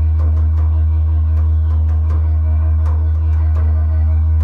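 Wooden didgeridoo playing a continuous low drone, held without a break by circular breathing, with uneven taps on a hand drum over it.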